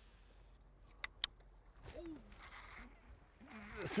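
A bass striking a topwater popper lure at the water's surface near the end, a splashing burst that builds quickly and is the loudest sound. Before it there is a quiet stretch with a couple of sharp clicks about a second in.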